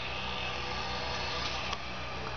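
Steady low mechanical hum with an even hiss over it, and a faint click about three-quarters of the way through.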